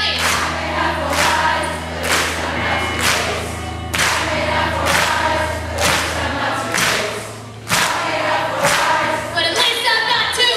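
Live rock band playing with sung vocals over drums, electric guitars, bass and keyboard, with a strong beat about once a second. A sustained low note cuts out about six and a half seconds in.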